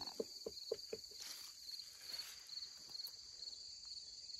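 A steady high-pitched chorus of crickets and other insects. During the first second there are a few soft rustles or steps among the garden plants.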